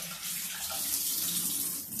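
Water pouring and splashing as it drains out of a canister filter's media basket lifted from the filter body, a steady rush that swells a little mid-way.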